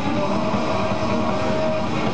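Heavy metal band playing live: distorted electric guitars, bass and drums in a dense, steady wall of sound, with one long held note over it.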